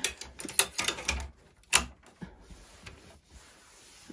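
Plastic embroidery hoop being slid and clipped onto the metal hoop-holder arms of a Brother Entrepreneur Pro X embroidery machine: a run of clicks and clacks over the first two seconds.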